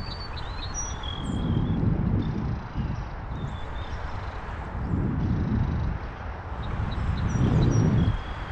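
Wind buffeting the microphone of a moving bicycle in low rumbling swells every couple of seconds, over a steady hiss of riding noise, with small birds chirping in short high notes.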